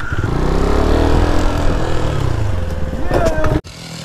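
Motorcycle engine revving: the pitch climbs for about a second and a half, then falls back, and the sound cuts off suddenly near the end.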